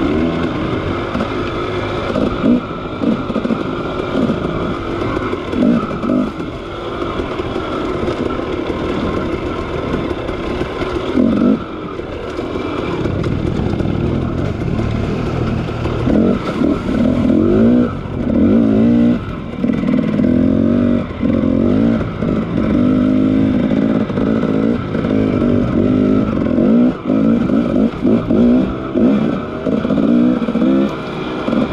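Dirt bike engine being ridden along a rough singletrack, its revs rising and falling again and again with the throttle, most often in the second half.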